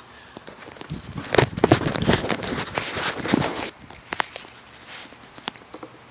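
Handling noise: a dense run of clicks and rustles for a couple of seconds, then a few scattered single clicks, as a screwdriver is picked up and worked around plastic engine-bay parts.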